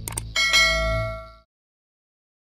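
Two quick mouse clicks, then a bright bell ding that rings and fades out within about a second: the sound effect for clicking a subscribe notification bell.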